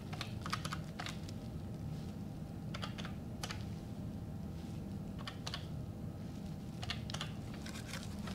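Desk phone keypad buttons being pressed to dial a number: quiet, scattered clicks in small irregular groups over a faint room hum.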